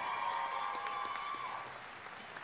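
Audience applauding and cheering at the announcement of an award winner, with a long held note over the clapping that stops near the end as the applause fades.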